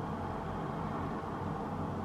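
Steady background hiss with a low hum: room tone, with no distinct sounds.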